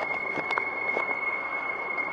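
Street noise during a walk: a steady wash of traffic sound with a constant high whine, and a few light clicks of footsteps on paving slabs.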